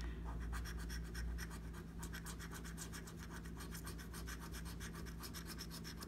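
Coin scratching the coating off a scratch-off lottery ticket in rapid, even back-and-forth strokes.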